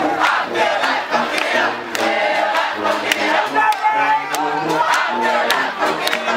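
A group of young people singing and chanting together at full voice, with hand claps cutting through.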